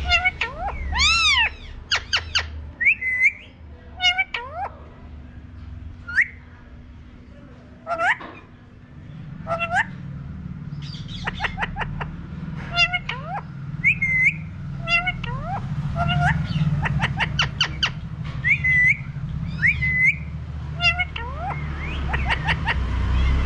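Alexandrine parakeet giving a run of short whistles, chirps and squawks, many sharply rising or falling in pitch. A low hum sits underneath and grows stronger from about nine seconds in.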